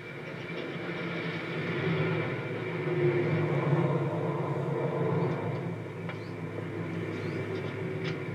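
Car engine running as the car drives in and pulls up, with a steady low hum that swells to its loudest a few seconds in and then eases off.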